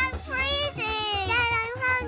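A high, childlike singing voice sings short held phrases over backing music with a steady low bass.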